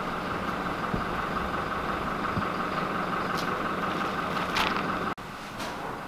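Steady background drone like an idling engine, with no speech, that cuts off abruptly about five seconds in, leaving quieter room tone.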